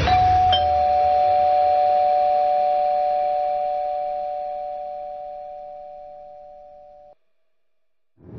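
Doorbell chime ringing ding-dong: a higher tone, then a lower one about half a second later, both ringing on and slowly fading until they cut off suddenly about seven seconds in.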